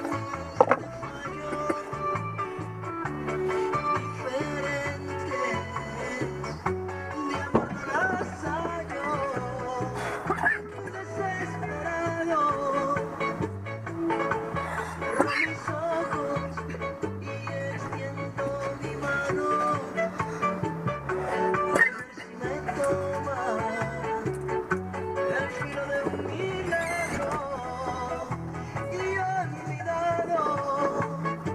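Latin music with a steady beat playing from a radio in a truck cab.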